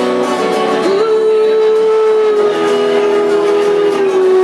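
A woman singing a song with guitar accompaniment; about a second in her voice slides up into one long held note that lasts to the end.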